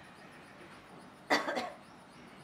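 A person coughing, two quick hacks about a second and a half in, against the faint room tone of a quiet, seated crowd in a hall.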